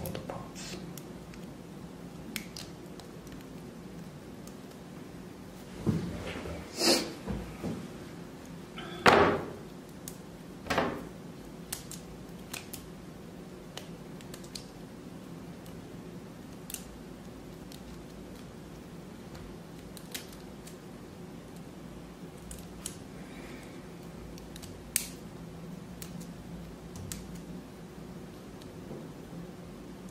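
Side cutters snipping small 3D-printed resin parts off their supports, mixed with the light clicks of the parts being handled and set down on a cutting mat. The sharp snaps come irregularly, with the loudest cluster about six to eleven seconds in, over a faint low hum.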